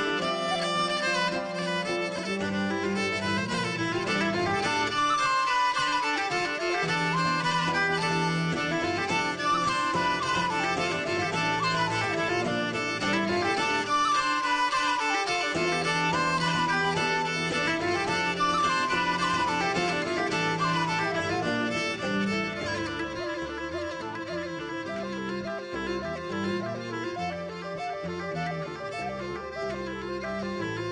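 Live folk instrumental: a wooden flute plays a quick, ornamented melody that runs up and down, over acoustic guitar and a steady low accompaniment.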